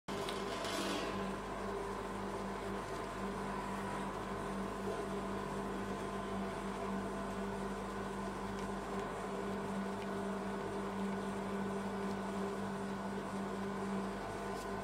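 Steady electrical hum of an ice roll machine's refrigeration unit running under its cold plate, with a short rustle about a second in.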